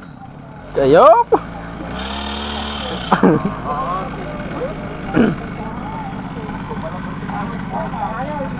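A small engine idling steadily, with a few short bits of men's voices over it.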